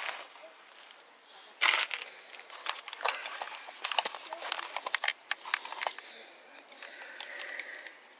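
Close handling noise from a camera being gripped and repositioned by hand: a burst of rustling about a second and a half in, then a rapid, irregular run of sharp clicks and knocks that dies down near the end.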